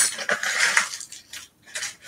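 Loose jewelry and beads clinking and rattling as a hand rummages through them in a cardboard box. The clatter is dense through the first second, then there is a short pause and another brief rattle near the end.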